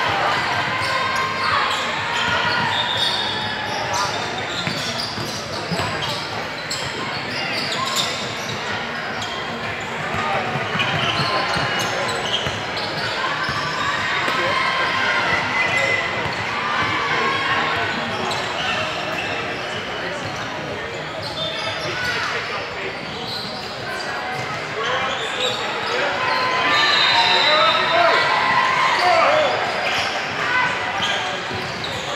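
Basketball dribbled on a hardwood gym floor during play, with players and spectators calling out, all echoing in a large sports hall.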